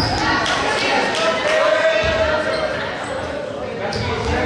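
A volleyball bouncing on a hardwood gym floor, with voices talking in the echoing gym.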